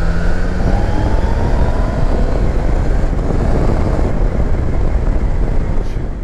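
Motorcycle under way: its engine running beneath heavy wind rush on the camera microphone, with a faint rising engine note about a second in.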